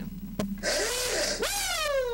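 A man's high 'whoo' whoop, sliding steadily down in pitch, after about a second of loud hissing.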